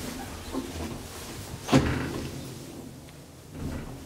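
KONE elevator car's sliding doors closing, ending in a sharp thump about two seconds in, with a softer knock near the end.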